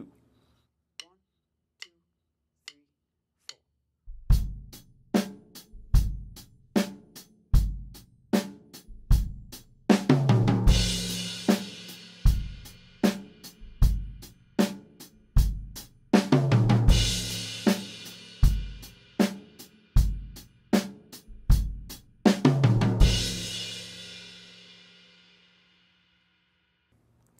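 Four light count-in clicks, then a drum kit playing a straight-eighth rock beat, with a short descending sixteenth-note fill on beat four (snare, then high tom, then floor tom) every two bars, landing each time on a crash cymbal and bass drum. The fill comes around three times, and the last crash rings out near the end.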